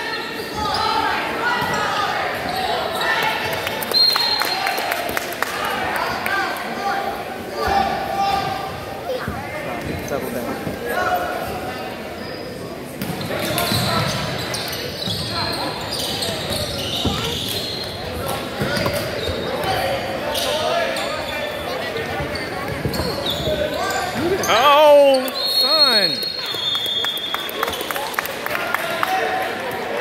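Basketball game in an echoing gym: a ball dribbled and bouncing on the hardwood court, with indistinct voices of players and spectators. Near the end come a few sharp rising squeaks of sneakers on the floor.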